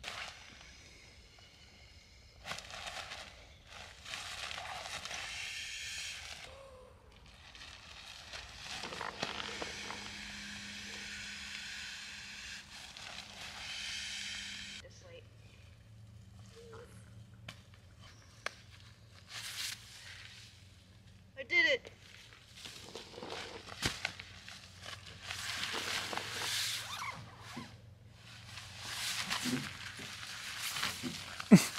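Air rushing from a pump sack into an inflatable sleeping pad in two long, steady hisses, then rustling of the pad's and sleeping bag's nylon as they are handled.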